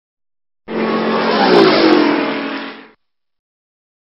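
An intro sound effect for an animated logo: a sudden rushing sound lasting about two seconds, with a pitch that falls through the middle and two quick high ticks, fading out near the end.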